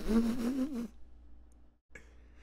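A man's voice drawing out a wavering, pitched sound for about a second, then stopping, leaving faint room noise.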